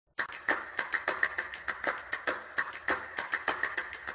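A rapid, slightly irregular run of sharp clicks or taps, about six a second.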